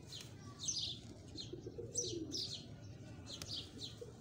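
Birds chirping: a steady run of short high chirps that fall in pitch, a few a second, with a faint low pigeon-like coo about halfway through.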